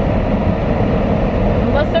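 Steady road and engine noise inside the cabin of a moving car, a low rumble.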